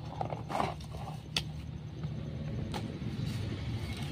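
Packaging being handled as a tripod is taken out of its cardboard box and plastic bag: short crinkles and rustles, with a sharp click about a second and a half in. A steady low hum runs underneath.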